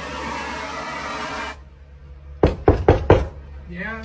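Handheld butane torch hissing steadily as its flame heats a metal doorknob, cutting off about a second and a half in. About a second later come four quick knocks on the door, and a voice starts just before the end.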